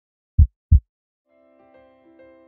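Heartbeat sound effect: one low double beat (lub-dub) about half a second in, then soft, sustained keyboard music fades in near the end.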